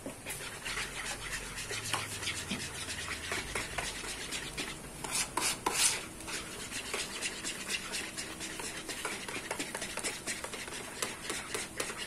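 Wire whisk stirring chocolate milkshake powder and water in a plastic bowl: a continuous run of quick scraping clicks as the powder dissolves into a thick paste, a little louder about five seconds in.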